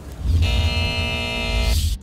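A short music sting of the kind used between TV segments: one held chord with heavy bass, starting about half a second in and cutting off suddenly just before the end.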